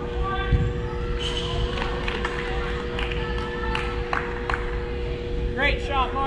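Indoor soccer in a large echoing hall: distant players' shouts and calls, with several sharp knocks of the ball being kicked, over a steady electrical hum. A louder rising shout comes near the end as a goal goes in.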